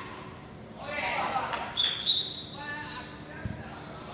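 Players shouting during a futsal game, with a few sharp kicks of the ball about halfway through and a duller thud of the ball near the end.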